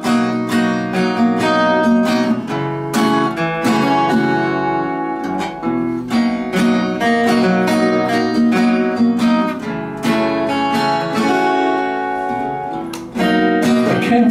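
Instrumental intro played on two guitars: an acoustic guitar strumming chords in a steady rhythm, with a second guitar playing along.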